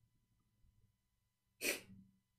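Near silence, then near the end one short, sharp breath noise from the man, well below the level of his speech.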